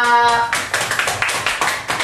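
A small group of people clapping their hands, a quick patter of claps that starts about half a second in and keeps on.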